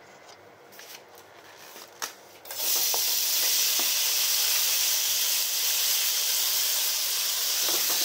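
Seasoned chicken tail pieces (bonjiri) hitting a hot oiled frying pan: after a few light knocks, a loud, steady sizzle starts suddenly about two and a half seconds in as the meat goes into the pan.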